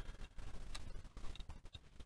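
Faint scattered clicks and handling noise from a Zhiyun Crane 2 camera gimbal's arms being pushed back by hand.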